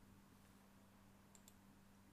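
Near silence over a low steady electrical hum, with two faint mouse clicks close together about one and a half seconds in.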